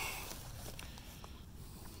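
Faint water sounds along a kayak's hull as it glides after a few paddle strokes, fading away, with a few light ticks.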